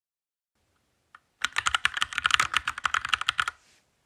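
Typing on a laptop keyboard: a single key click about a second in, then a quick burst of some two seconds of rapid keystrokes as a short phrase is typed.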